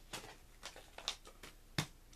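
Cardboard sample packaging being handled and pulled apart: a few crisp crackles and snaps, the sharpest one near the end.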